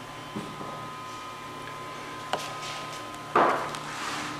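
Bedini-Cole window motor running with a steady whine and low hum from its switching coils. A few light knocks sound through it, and a louder knock comes about three and a half seconds in.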